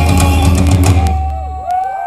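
Live rock band of electric guitars, bass and drums ending a song on a final hit. The band stops about a second in while the low bass note rings on briefly, and whistles and shouts from the crowd start near the end.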